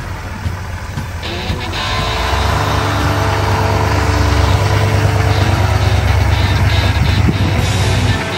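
A GMC Denali HD pickup truck's engine running with a steady low rumble that grows louder about two and a half seconds in. Rock music plays over it.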